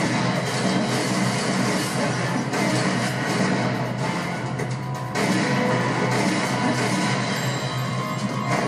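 Music from a television drama's soundtrack, dense and continuous, with no dialogue over it.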